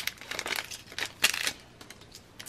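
Thin clear plastic packaging crinkling and crackling in the hands, a quick run of crackles for about a second and a half that then stops.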